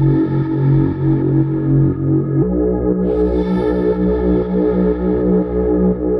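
Background music: sustained synthesizer chords, changing to a new chord about two and a half seconds in.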